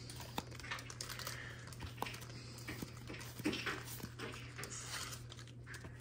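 Faint rustling and small clicks of a stack of trading cards being slid one behind another in the hands, over a steady low hum.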